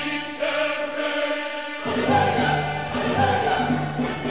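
Classical music: an orchestra with choral voices. The low instruments fall away for the first two seconds or so, then the full ensemble comes back in.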